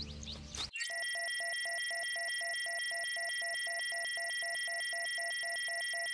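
Electronic ident sound effect: steady high synthetic tones over a fast, even pulsing beep of about six pulses a second, starting about a second in.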